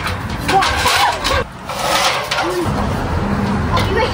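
Aluminium extension ladder being lifted off its wall hooks and carried, with repeated knocks and clatter over a noisy rustle, and brief muffled voices.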